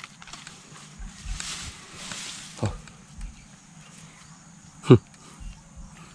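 Wire-mesh cage trap with a large snake inside being handled on grass: a soft rustle, then a small knock and, near five seconds in, a louder sharp knock.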